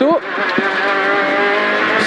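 Peugeot 208 R2 rally car's 1.6-litre four-cylinder engine heard from inside the cabin under hard acceleration. After a brief dip at the very start, its pitch climbs steadily as it revs up through the gear.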